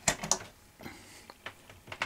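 A grey Schuko mains plug being pulled out of a wall socket strip: two sharp clicks right at the start, then a few fainter taps and handling clicks as the plug is held.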